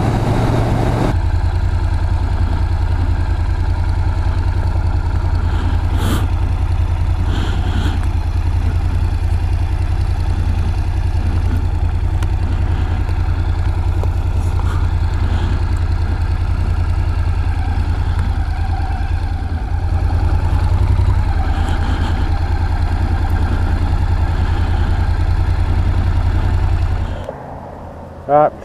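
Honda NC750's parallel-twin engine running steadily while the motorcycle is ridden, with wind rush on the handlebar-mounted camera. The engine gets briefly louder about two-thirds of the way through, and the sound drops away abruptly just before the end.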